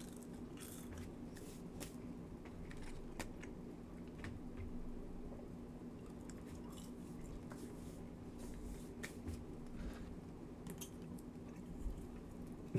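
A person chewing and biting french fries close to the microphone: soft, faint mouth sounds with small scattered crunches. A steady low hum runs underneath.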